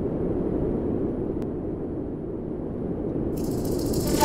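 A steady, low, grainy rumbling noise with a crackly texture. A shimmering high sound joins it near the end.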